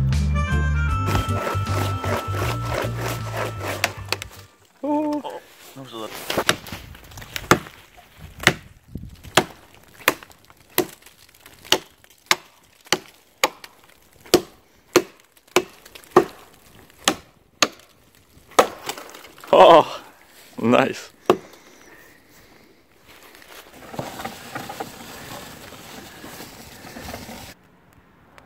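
Background music fading out, then a blade chopping into a dead fallen branch in an even rhythm of about one and a half strikes a second. About 20 s in come two louder, drawn-out cracking sounds as the wood gives.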